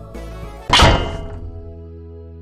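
Background music with held notes, and one loud thunk sound effect about three-quarters of a second in that rings briefly and fades.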